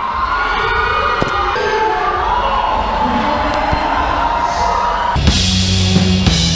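Audience cheering and whooping over music in a live venue. About five seconds in, a band comes in loud, with five-string electric bass notes and a drum kit.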